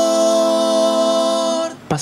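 Three overdubbed parts by one male singer holding the closing chord of a phrase in three-part a cappella harmony, one long sustained vowel on 'amor', from an Argentine folk polka arrangement. The chord stops just before the end.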